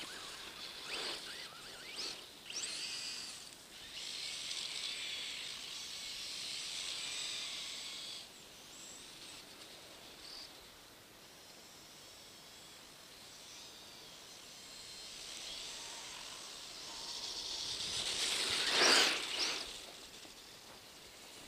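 Electric radio-controlled buggies driving through snow: a hissing rush of motors and tyres churning snow. It swells for several seconds early on, fades, then builds again to its loudest just before the end as a buggy passes close.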